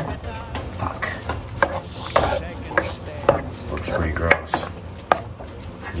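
A plastic spatula knocking and scraping against a pot as it stirs a thick meat sauce, giving a run of irregular sharp clacks, under faint background music.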